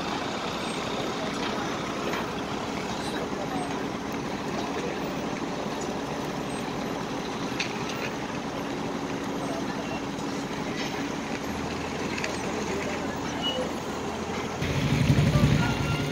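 Construction machinery running steadily, an engine drone with a faint steady hum under it. Near the end a louder, deeper rumble comes in.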